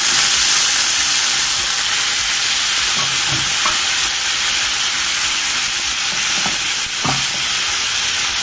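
Beef pieces and onion masala frying in oil in a stainless steel pan, sizzling steadily and loudly, with a few faint stirring sounds about three and seven seconds in.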